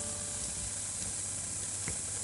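Steady hiss with a low hum underneath, with no music or singing: the background noise of the recording once the song has ended. A faint click comes near the end.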